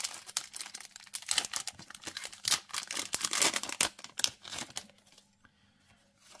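A Yu-Gi-Oh! booster pack's foil wrapper being torn open and crinkled by hand: a dense run of crackles and rips that stops about five seconds in.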